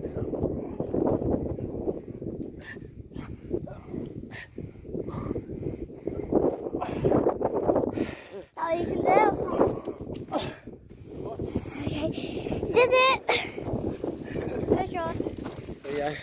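Steady low rumbling noise, with a high-pitched human voice crying out twice, about nine and thirteen seconds in.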